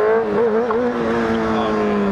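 Sport motorcycle engine running at a steady pitch while riding, heard close from the bike, its pitch easing slightly near the end.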